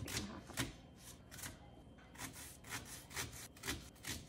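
Kitchen knife chopping an onion on a cutting mat: an uneven run of light knife strikes, about two a second.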